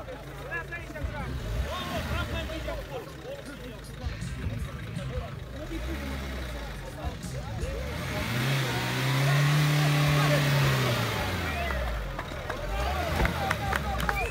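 Suzuki Jimny's engine revving under load as the 4x4 works its way out of a muddy rut, the revs climbing and then dropping off in a louder surge past the middle.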